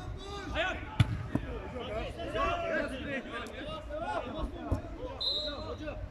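A football kicked hard: a sharp thump about a second in and another just after, among players' shouts. A short, high referee's whistle near the end stops play.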